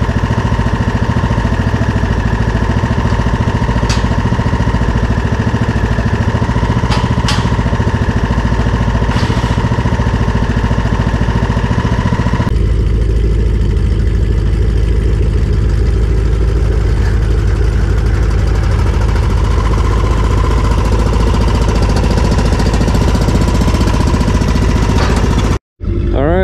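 John Deere riding lawn mower's small engine running steadily as the mower is driven, with a thin steady whine over it. About halfway through the sound changes abruptly: the whine drops out and the engine sounds lower and fuller.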